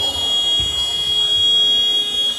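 Basketball arena scoreboard buzzer sounding one long, loud, steady high-pitched tone, signalling a stop in play.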